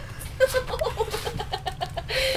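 A girl imitating a chicken, a quick run of short clucks, about ten a second, starting about half a second in.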